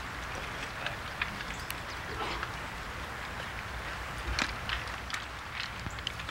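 Outdoor ambience at a golf course: a steady background hiss with scattered faint short clicks and ticks, the sharpest about four and a half seconds in.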